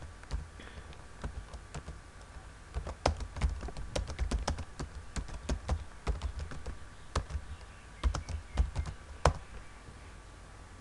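Typing on a computer keyboard: irregular key clicks, a few scattered at first, then quicker runs of keystrokes with short pauses between them.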